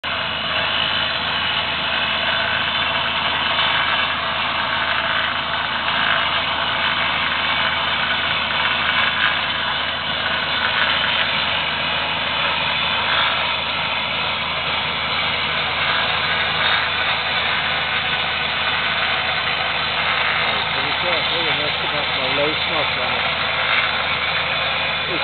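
Rock drill boring into bedrock: a loud, steady, unbroken noise, with machine engines running.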